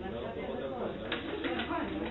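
Indistinct voices talking in a room, with a couple of light knocks about a second in.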